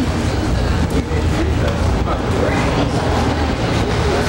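Steady low mechanical rumble of running machinery, with indistinct voices mixed in.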